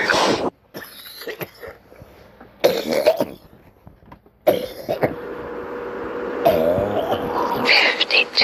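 A person's voice in short, separate bursts, with a faint steady hum underneath from about halfway through.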